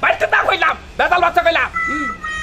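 Loud human voice in two stretches of about half a second each, then a steady high tone near the end.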